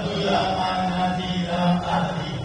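A man's voice chanting one slow melodic phrase in long held notes, in the style of Quranic recitation (tilawat) within a sermon. The phrase fades out near the end.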